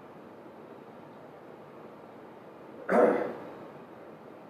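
A single short, loud cough from a man, about three seconds in, over faint room hiss.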